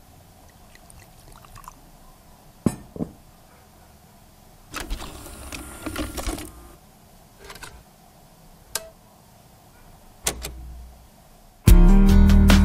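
A cassette tape and a portable cassette boombox being handled: a scattering of sharp plastic clicks, with a longer rattle of handling about five seconds in and a low thud near ten seconds. Music with guitar starts abruptly just before the end.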